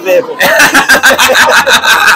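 Speech: a man talking loudly into a handheld microphone.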